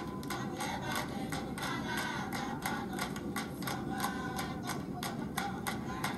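Samba recording played through a laptop speaker: a woman beating a metal can in a steady, quick rhythm for dancing, with faint singing.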